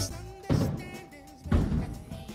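Two heavy thuds about a second apart, each ringing out briefly, with music in the background.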